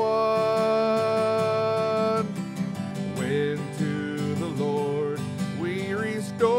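A man singing a hymn to his own strummed acoustic guitar. He holds one long sung note for about the first two seconds, then the guitar strumming carries on under softer, gliding singing.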